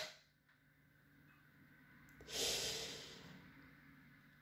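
A person's long exhale, a breathy rush that starts about two seconds in and fades away over a second or so, with near silence before it.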